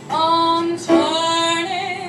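A woman singing solo into a stage microphone: two long held notes of about a second each, the second ending in a short wavering turn.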